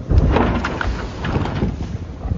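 Wind buffeting the microphone on the deck of a racing sailboat under way, a loud low rumble with irregular knocks and the rush of water around the boat.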